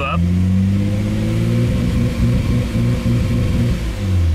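Nissan Skyline GT-R's RB26DETT twin-turbo straight-six being revved: the engine note climbs for about a second and a half, then stutters and breaks up as it stalls around 2,000–2,500 rpm and won't rev higher. The ECU is holding it in safe mode, which the owner puts down to weak solder joints in the mass airflow sensors.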